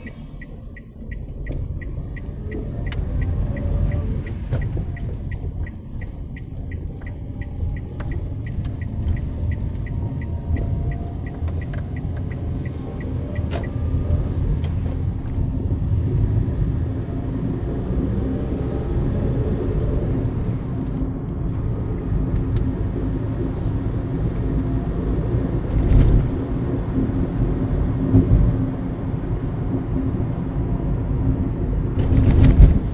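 Car cabin noise: engine and tyre rumble as the car pulls away and drives on, with the turn-signal indicator ticking steadily through the first half until it stops about 13 seconds in. Two louder thumps near the end.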